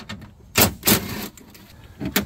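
DeWalt cordless impact driver run in two short bursts, the second longer, backing out a 10 mm window-regulator bolt in a steel car door.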